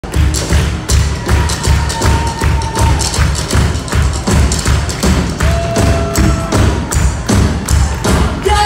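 Live rock band playing loudly, driven by a heavy, steady drumbeat of about two to three hits a second, with a few long held notes ringing above it.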